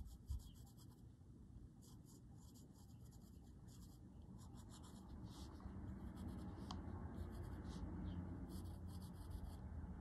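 Graphite pencil scratching over a paper tile in many short, quick shading strokes, faint, over a low hum that grows a little louder in the second half.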